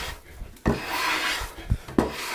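A No. 5 bench plane making one short stroke along the edge of a board, its iron rasping through the wood, with a knock as it lands and another near the end. The stroke takes shavings off the middle of a convex edge to hollow it slightly.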